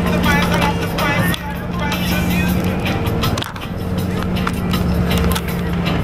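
Steady low drone of a bus engine heard from inside the passenger cabin while the bus is under way.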